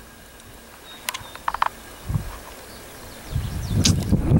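A bird gives a few short, quick calls about a second and a half in, over a quiet outdoor background.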